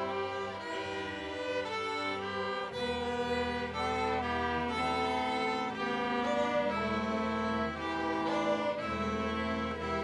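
Middle school string orchestra playing a melody in held bowed notes, violins over a low double-bass line that changes note now and then.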